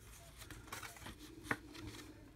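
Faint rustling and light clicks of a paper scratch-off lottery ticket being handled and turned over on a clipboard, with one sharper click about a second and a half in.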